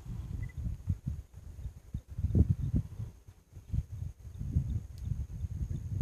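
Lions feeding on a zebra carcass: irregular low sounds of tearing and chewing, with a few short sharp clicks.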